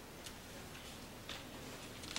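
A few faint, short clicks at uneven spacing over quiet room tone.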